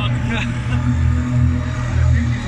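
Quad bike (ATV) engine running with a deep, steady rumble as it is ridden off across sand, the throttle not fully opened.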